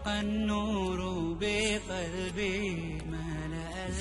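Slow chanted vocal melody with long held, wavering notes over a steady low drone, as theme music.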